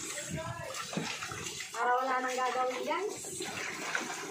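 Water sloshing and splashing in a plastic basin as a plastic cutting board is scrubbed and rinsed by hand. A singing voice holding drawn-out notes is heard over it, loudest a little under halfway in.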